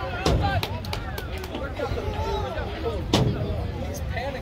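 Overlapping chatter of spectators and players, none of it picked out as words. Two sharp thumps cut through it, one about a third of a second in and one about three seconds in.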